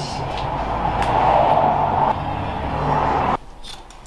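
A steady rushing noise over a low hum that swells about a second in, then cuts off suddenly near the end.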